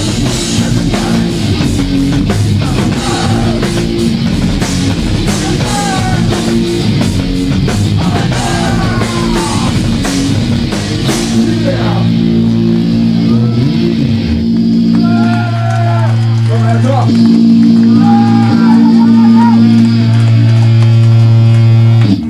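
Hardcore punk band playing live: drums and distorted guitars and bass with shouted vocals. About halfway through the drums stop and the guitars and bass hold a sustained chord under the shouting, and the music cuts off suddenly at the end.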